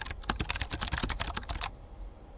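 Computer keyboard typing sound effect: a fast run of key clicks that stops shortly before the end.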